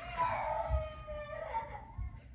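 A child's drawn-out, high-pitched wail, held for nearly two seconds with its pitch sinking slightly. A low thump comes about three-quarters of a second in.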